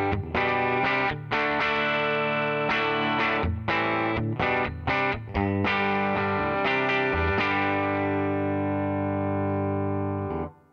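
Gibson Les Paul electric guitar played through an amp: strummed rhythm chords, a run of short choppy stabs in the middle, then a held chord left ringing near the end.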